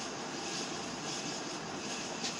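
Steady, even hissing background noise with no distinct events.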